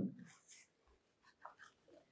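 A pause in a man's speech: a nearly quiet room with the tail of his last word at the very start, then only a few faint, short, soft sounds.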